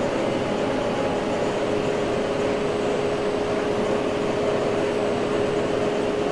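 Steady machine hum with a constant mid-pitched whine, unchanging throughout.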